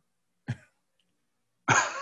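A short throat sound about half a second in, then laughter breaks out near the end.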